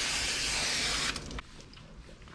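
Handheld hose sprayer spraying water onto a wet dog's coat, a steady hiss that shuts off about a second in, followed by a faint click or two.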